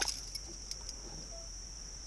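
A steady, high-pitched insect chorus drones without a break. A sharp click sounds right at the start.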